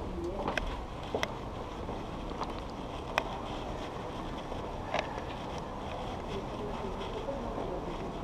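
Bicycles being wheeled out of a lift across a station floor, with a few sharp clicks and knocks from the bikes over a steady low rumble.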